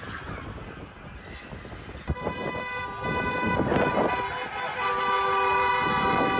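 Several car horns honking in long held blasts at different pitches, overlapping, starting about two seconds in with more joining later, over street traffic noise. It is the honking of cars in a wedding convoy.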